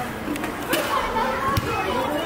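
Children's voices chattering and calling out during a game, with a couple of thuds from a basketball bouncing on paving.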